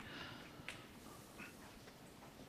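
Near silence: faint room tone with one small click about two-thirds of a second in.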